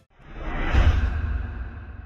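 A whoosh sound effect for an animated logo sting. It swells up from silence to a peak just under a second in, with a deep rumble beneath the rushing air, then fades away.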